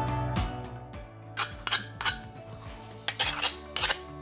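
Background music fading away in the first second, then a series of short, sharp scraping strokes, several in quick succession near the end: the edge of a freshly cut strip of glass being scraped with another piece of glass to take off its razor-sharp edge.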